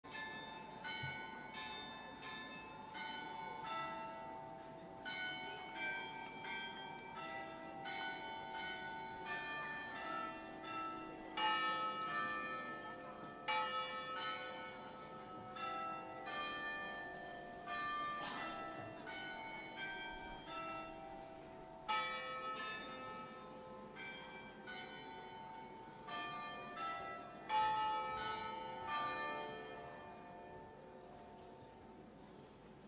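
Church bells ringing a long run of strikes at different pitches, about one or two a second, each note ringing on and overlapping the next.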